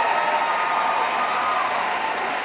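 Audience applauding and cheering, with a few voices calling out over the clapping.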